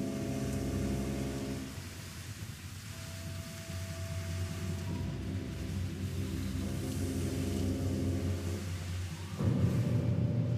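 Symphonic music from a symphonic poem: sustained low chords thin out into a quieter passage with a single held higher note, then build again, with a sudden louder full-ensemble entry near the end.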